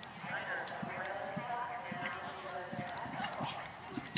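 Hoofbeats of a horse cantering on grass, a run of dull thuds about two to three a second, with voices talking in the background.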